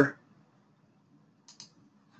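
Two quick computer mouse-button clicks about one and a half seconds in, over a faint low hum.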